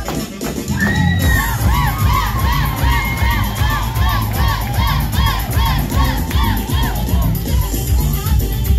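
A long, high yell about a second in breaks into a rapid string of rising-and-falling shouted cries, about three a second, in the style of a Mexican grito, over the dance track's steady low beat.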